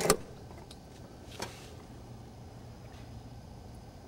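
A sharp metallic click from the SR-71's cockpit drag chute handle being worked by hand, then a fainter click about a second and a half in, over a low steady room hum.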